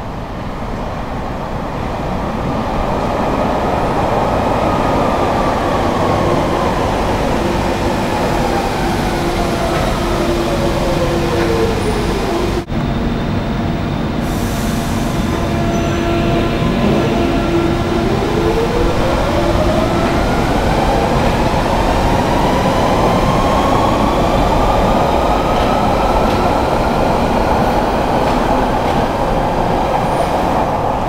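London Underground 1992 Stock tube train braking into a platform, its traction-motor whine falling steadily in pitch as it slows, over a heavy tunnel rumble. After a short steady hum while it stands, the whine rises again as the train accelerates away.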